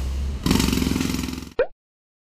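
A low steady engine hum, then from about half a second in a jackhammer breaking up street pavement in a rapid clatter. The clatter cuts off suddenly after about a second.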